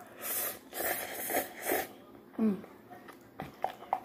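A person slurping instant stir-fry noodles off chopsticks: a few quick slurps in the first two seconds, then a short hummed "mm".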